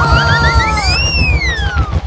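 Cartoon sound effects: a fast, pulsing low rumble under a run of short rising chirps, then a long whistle that rises and falls, as the toy train's track begins to give way.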